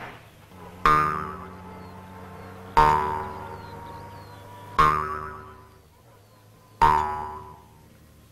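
Film score: a jaw harp twanging four times, about two seconds apart, each note dying away.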